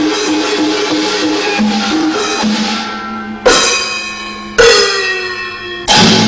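Chinese percussion ensemble: a row of tuned Chinese drums (paigu) plays a quick pitched pattern. Then three loud gong strokes about a second apart ring out, each sliding down in pitch as it fades.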